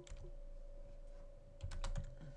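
Keystrokes on a computer keyboard: one tap at the start, then a quick run of four or five keystrokes near the end, over a faint steady hum.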